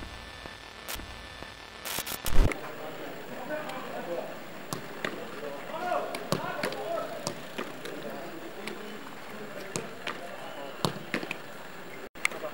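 Outdoor football training: sharp, irregular thuds of footballs being kicked and caught, over faint voices calling across the pitch. A single louder hit comes about two seconds in.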